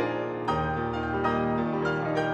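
Concert grand piano played solo: a fast, dense passage of struck chords over held bass notes, with a new attack about every half second.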